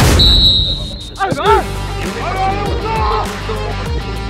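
A brief whoosh, then a short, steady, high referee's whistle blast for the kick-off, followed by background music.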